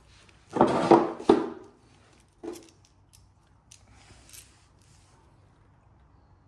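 Small steel bolts and spacers of a motorcycle docking hardware kit being handled: a jangling rattle lasting about a second, then a few light metallic clicks, the last with a brief high ring.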